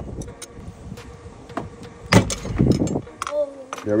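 Metal tool clicking, knocking and scraping against a stainless steel boat steering wheel's hub as the wheel is pried off its helm shaft, with a loud knock about two seconds in. The wheel is stiff on the shaft because of corrosion.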